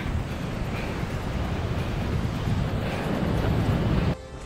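Wind blowing across the camera microphone on an exposed clifftop, a low rumble that grows a little louder toward the end.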